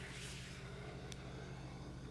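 Quiet background of steady hiss with a low, constant electrical hum, typical of an old tape recording, and one faint click about a second in.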